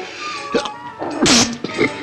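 Film soundtrack music, broken a little after a second in by a short, loud, hissy burst with a falling tone, a sound like a sneeze or an animal cry.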